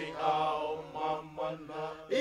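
Tongan vocal chant for a faikava (kava-drinking gathering): singing voices moving over a steady, held low note.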